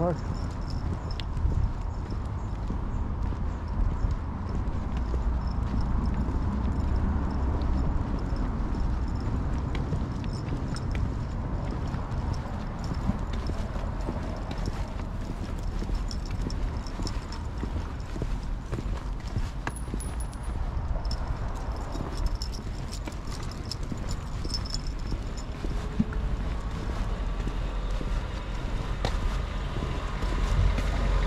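Footsteps of a person walking at a steady pace on a tarmac road, over a steady low rumble on the microphone.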